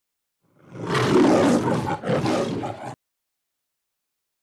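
A lion's roar sound effect in two parts split by a brief dip, ending abruptly after about two and a half seconds.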